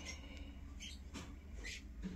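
Quiet room with a low steady hum and a few faint short clicks.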